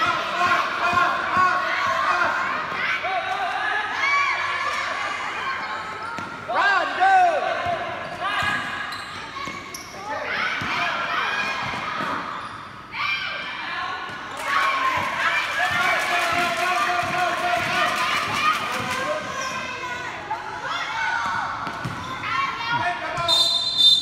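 A basketball bouncing on a hard court floor during play, amid people shouting and calling out. A short, high whistle blast sounds near the end.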